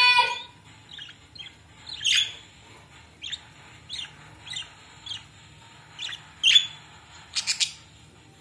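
Pet budgerigars chirping in short separate calls, roughly one a second, with louder chirps about two seconds in and past the six-second mark and a quick run of three near the end.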